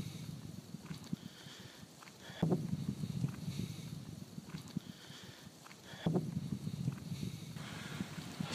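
Low crackling rumble on a phone microphone, typical of wind buffeting and handling noise. It comes in surges that start suddenly about two and a half and six seconds in and fade away, with brief near-silent dropouts just before each surge.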